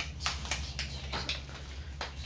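Hands patting tortilla dough into rounds: a string of short, soft slaps at an uneven pace.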